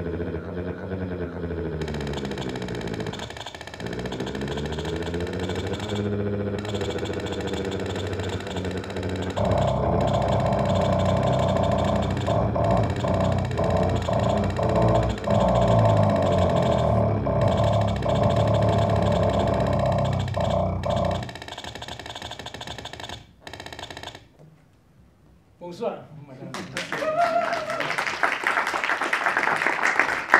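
Electronic sounds from a homemade electronic instrument. Several tones glide up and down in fanning sweeps, then a louder, denser texture comes in about ten seconds in and breaks off around twenty-one seconds. After a brief lull, a new, brighter electronic sound starts near the end.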